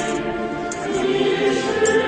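A church choir singing in long held notes, with several voices together.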